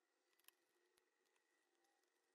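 Near silence: room tone with a few faint clicks, the clearest about half a second in and another about a second in.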